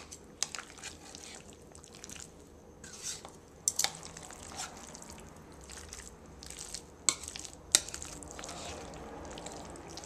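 A metal spoon stirring and folding chopped egg into chicken salad in a plastic bowl, with a few sharp clicks of the spoon against the bowl, the loudest about three quarters of the way through.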